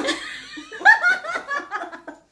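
A woman laughing out loud in a quick run of short bursts.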